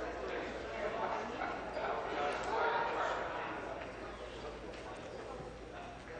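Indistinct murmur of many people talking at once in a large chamber, no single voice standing out, dying down over the last few seconds.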